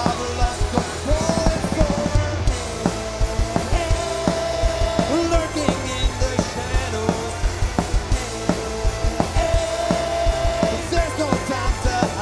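Punk rock band playing live: electric guitars, bass and a steady drum beat, with long held notes in the melody. An instrumental stretch without vocals.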